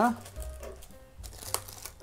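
Quiet handling of parts and packaging in a cardboard box, with light crinkling and a single small click about one and a half seconds in.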